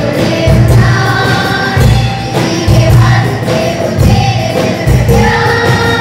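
A school choir of children singing together, accompanied by congas, hand drums and a drum kit keeping a steady beat.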